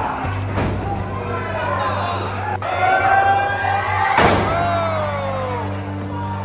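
Wrestlers' bodies slamming onto a wrestling ring's mat: a thud shortly after the start and a louder slam about four seconds in. Voices shout around the slams, over music with a steady bass.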